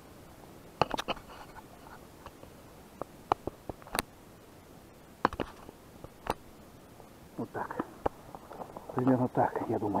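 Handling noise close to the microphone: about eight sharp, separate clicks and knocks spread over the first eight seconds, then a man speaking quietly near the end.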